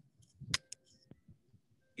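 A few short, faint clicks, the sharpest about half a second in and smaller ones following within the next second.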